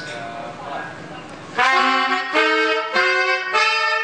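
Horn section of two saxophones and a trumpet playing together in a soundcheck balance run. After a quieter first second and a half, they play a short phrase of about four held notes, each just over half a second long.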